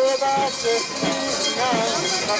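A crowd of mikoshi bearers chanting and calling out in many overlapping voices, some notes held, mixed with metallic clinking from the portable shrine's fittings as it is jostled.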